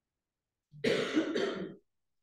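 A person clearing their throat, one short rasping burst in two quick parts about a second in.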